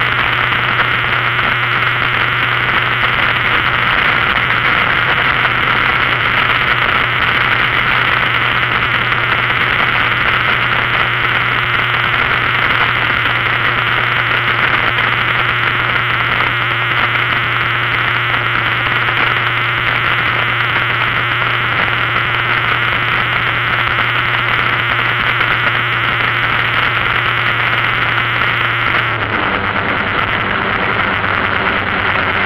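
Steady loud rush of wind and road noise on the microphone of a moving vehicle, with a steady low engine hum underneath. Near the end the rush drops away and the engine note changes.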